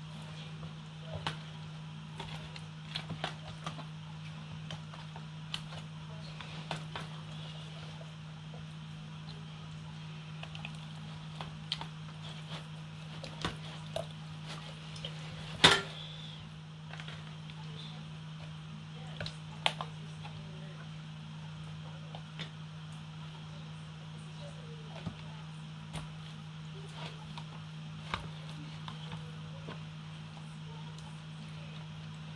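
Bare hands squishing and rubbing a pepper seasoning paste into food in a plastic tub: scattered wet clicks and taps, with one sharper knock about halfway through, over a steady low hum.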